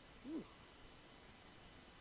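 One brief vocal sound, a short syllable that rises and then falls in pitch, about a third of a second in; otherwise near silence with faint hiss.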